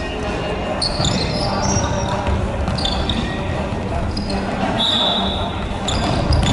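Futsal being played on a wooden gym floor: sneakers squeak in short chirps, the ball thuds off feet and floor, and players call out, all echoing around the large hall.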